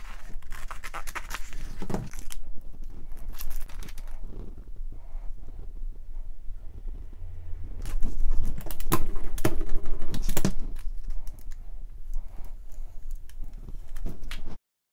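Scissors snipping through a sheet of self-adhesive vinyl, then crackling and rustling of plastic transfer tape and its backing as it is pressed down and rubbed over vinyl lettering, with sharp ticks and scrapes. The handling is loudest about eight seconds in.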